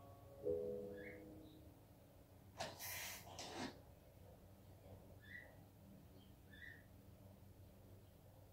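Faint tail of a movie trailer's music through a home theatre system: a sustained note dies away in the first second or so. A soft rush of noise lasts about a second, starting near three seconds in, and a few faint short high chirps come later.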